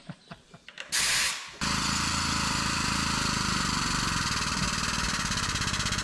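Air-over-hydraulic pump driving a hydraulic bead breaker, pressing a skid steer tire's bead off its steel rim: a short blast of air hiss about a second in, then a rapid, steady chatter.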